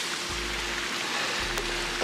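Steady splashing of water from a swimming pool's wall fountains and jets, just switched on, with a faint steady hum under it.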